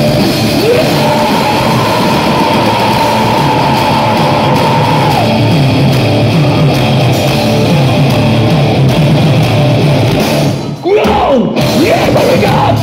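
Heavy metal band playing loud live in a club: distorted guitar, bass and drums. A long held high note runs through the first half, the low end chugs in a steady rhythm after it, and there is a brief break near the end before the band comes back in.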